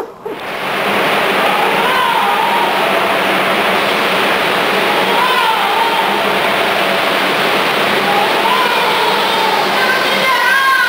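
A loud, steady rushing roar with a low hum in it, and over it a few drawn-out shouted or sung voice calls, about one every three seconds.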